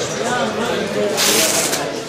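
Indistinct voices of people talking in a large, echoing hall, with a short loud hiss lasting about half a second just past the middle.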